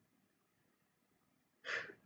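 Near silence, then near the end a man's short breath in before he speaks again.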